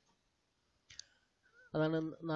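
A short pause broken by a single sharp click about a second in, then a man's voice starts speaking near the end.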